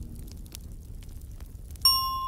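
Fire crackling with faint scattered clicks over a low rumble, in a lull between pieces of music. Near the end a single bright glockenspiel note rings out.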